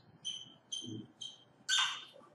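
Marker squeaking on a whiteboard as letters are written: three short high squeaks about half a second apart, then a louder, noisier stroke near the end.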